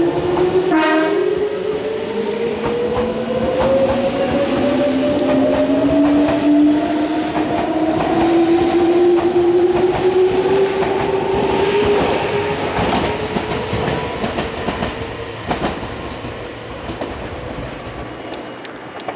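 Meitetsu Panorama Super limited express train pulling out of the station. Its motors whine in two tones that climb steadily as it gathers speed, with wheels clacking over rail joints and a brief high tone about a second in. The sound fades over the last few seconds as the train leaves.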